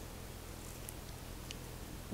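Quiet steady background hiss and low hum, with two faint ticks about a second in and halfway through.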